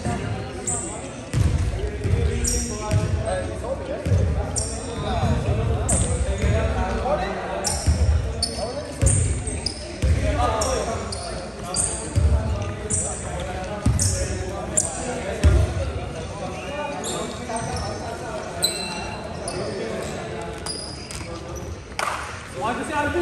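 A basketball bouncing on a hardwood gym floor about once a second, with short high sneaker squeaks and indistinct voices echoing in the gym.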